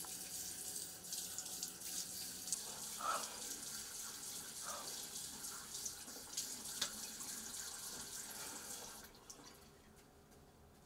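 Bathroom sink tap running water into the basin, with a few brief louder splashes, until it is shut off about nine seconds in.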